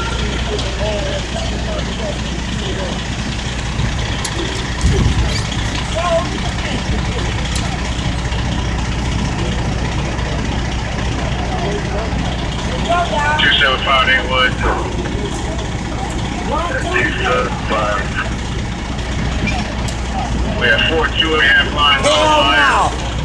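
A large vehicle's engine idling with a steady low hum, most likely the ambulance parked beside the crowd. There is a brief thump about five seconds in. Voices talk in bursts in the second half.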